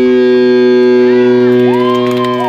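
Electric guitar feedback and a held distorted chord ringing out through the amplifiers as a punk song ends. The deepest notes drop away at the start, and about halfway through, whining tones glide up, hold, and slide back down.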